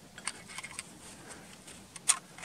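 A few faint metallic clicks and light rattles of a hunting rifle being handled at its action as it is unloaded.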